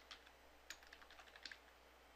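Faint typing on a computer keyboard: a quick, irregular run of key clicks lasting about a second and a half, then stopping.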